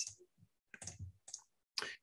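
A few faint computer mouse clicks, short and spaced unevenly.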